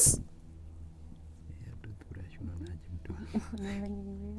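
Two people whispering to each other as they confer quietly over an answer. Near the end comes a brief, steady held hum.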